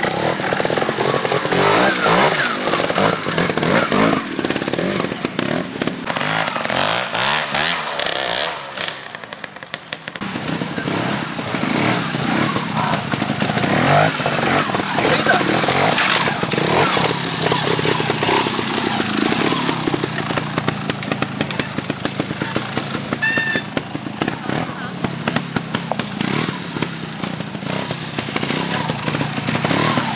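Trials motorcycle engines revving and blipping hard as riders work over a rough section, with the engine easing off briefly about eight seconds in before picking up again.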